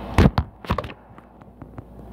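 Close handling knocks: two loud thumps in the first second, then a few faint clicks, as the empty plastic water bottle is moved and put down.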